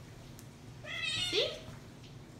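Domestic cat meowing once, about a second in, as it is picked up and held.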